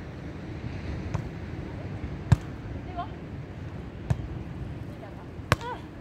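A volleyball being struck by hands and forearms in a beach volleyball rally: four sharp smacks about one to two seconds apart, the second and last the loudest.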